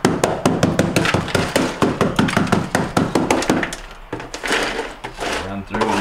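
Putty knife chipping and prying at a layer of ice on the plastic floor of a refrigerator's bottom freezer: ice built up from a frozen drain line. Rapid knocks, several a second, for about three and a half seconds, then fewer and quieter.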